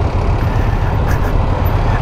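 Motorcycles idling at a standstill: a steady low rumble with no clear start or stop.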